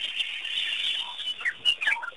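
Many small birds chirping and calling together in a dense chatter, with a few louder, sharp chirps in the second half.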